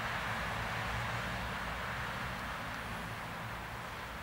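Steady, low hum of distant road traffic.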